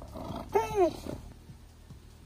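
A dog gives a short, high, two-part vocalization that rises and falls in pitch, like a 'woo-woo' talking sound, about half a second in, over faint background music.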